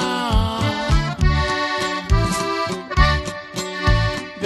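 Accordion playing an instrumental passage between the verses of a Mexican corrido, over a bass line keeping a steady beat.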